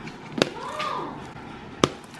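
Two sharp clicks about a second and a half apart as thick fluffy slime is handled in a plastic tub, with a faint voice between them.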